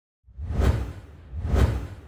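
Two whoosh sound effects for an animated logo intro, about a second apart, each swelling and fading with a deep low rumble beneath; the second trails off slowly.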